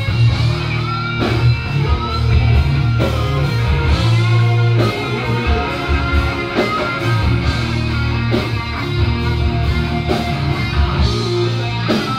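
Heavy metal music played on distorted electric guitars over a heavy low end, with regular drum hits, running continuously.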